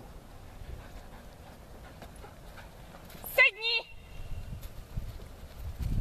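Footsteps of a handler and dog on grass, with one short, loud, high-pitched call from the handler a little past halfway, a command that leaves the dog sitting.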